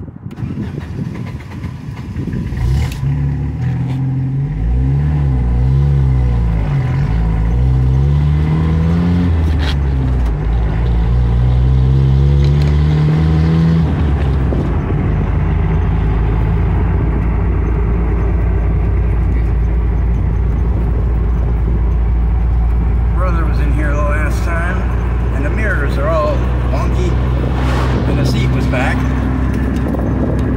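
Jeep engine pulling away from a stop, heard from inside the cab: its pitch climbs and drops back several times as it shifts up and gathers speed, then it settles into a steady cruise.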